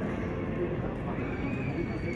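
The last trace of a grand piano's final chord dying away, leaving the steady background noise of a pedestrian street with a faint thin high tone in the second half.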